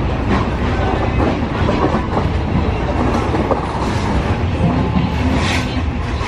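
Inside a moving passenger train carriage: a steady low rumble of the wheels running on the track, with scattered short clicks over it.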